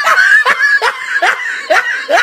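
Laughter: a run of short, evenly spaced 'ha' bursts, about two or three a second.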